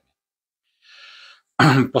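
A man's short, quiet in-breath, about half a second long, drawn just before he speaks again; his speech starts near the end.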